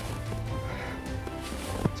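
Background music of steady, held tones.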